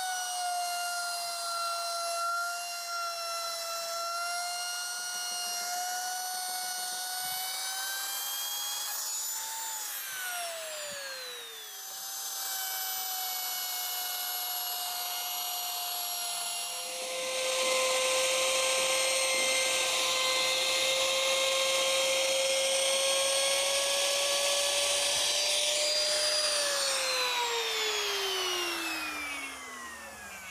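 Compact trim router running as it routes a chamfer along the edge of a wooden rafter board, a high motor whine. It winds down about ten seconds in, starts again, runs louder with the rasp of the bit cutting wood from about seventeen seconds, and winds down again near the end.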